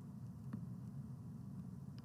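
Faint, steady low background hum of room tone, with one faint tick about half a second in.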